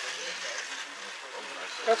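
Scale slot cars racing around a copper-railed track: a steady hiss and whir of their small electric motors and pickups, with faint chatter from the racers behind it.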